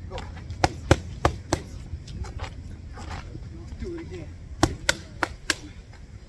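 Boxing gloves smacking focus mitts: two quick combinations of four sharp punches each, one about half a second in and another near the end.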